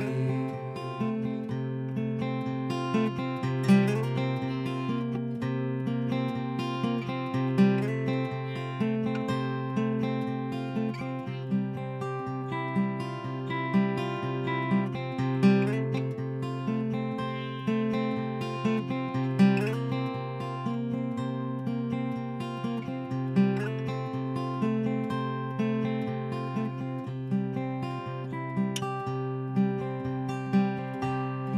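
Solo acoustic guitar playing an instrumental riff over a ringing low bass note, the phrase repeating about every four seconds with an accented note at the start of each cycle.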